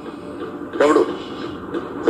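Film soundtrack playing back: a brief, loud voice just under a second in, over a steady background bed.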